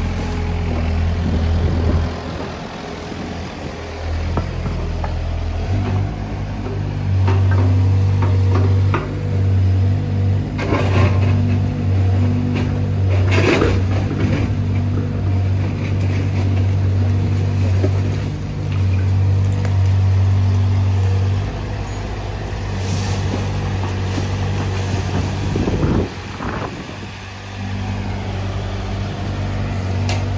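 Kubota U55-4 mini excavator's diesel engine running under working load, its note rising and falling as the hydraulics work. It is loudest from about six seconds in until about twenty-one seconds. Crunching and scraping of the bucket in soil and broken rock comes a few times, around the middle and again near the end.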